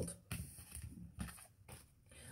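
Faint soft clicks and rustles of a deck of tarot cards being handled, dying away to near silence in the second half.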